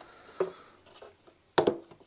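Hands working a quick-release headlight guard on its mounting brackets: quiet handling, then a couple of sharp clicks about a second and a half in.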